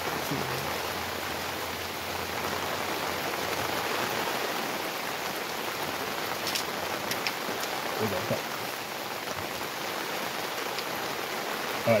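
Steady rain falling on the surroundings, an even hiss of drops. Near the middle come a few faint small clicks from a metal bipod being handled and adjusted.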